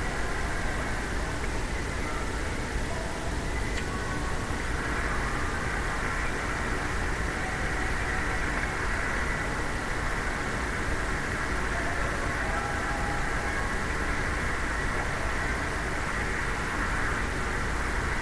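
Steady hum and hiss of indoor ice-rink ambience, with a low rumble and no distinct puck, stick or skate sounds standing out.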